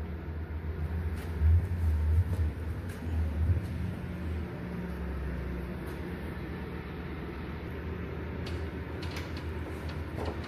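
A low steady rumble with a few soft bumps in the first four seconds and faint clicks near the end, from the handheld phone being moved around the car.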